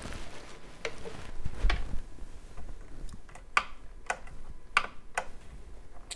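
Light, irregular clicks and taps from hands working the plastic parts and catches of an Elna eXplore 220 sewing machine around its bobbin area, feeling for the feed-dog drop lever; about seven clicks spread unevenly over a few seconds.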